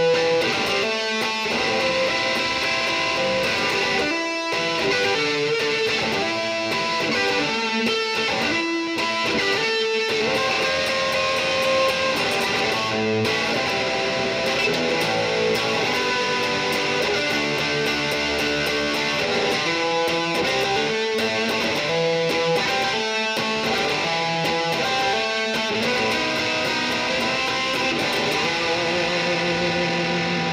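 No-name flying V electric guitar with humbuckers, played through a Peavey Audition 110 combo amp on its distortion channel: a steady run of distorted riffs, picked notes and chords.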